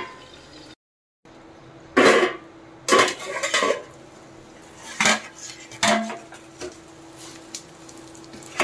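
Metal cookware clattering: a stainless steel plate used as a lid clanking against the kadhai as it is lifted off with a cloth, then a spatula knocking in the pan. Several sharp clanks about a second apart, the loudest about two seconds in.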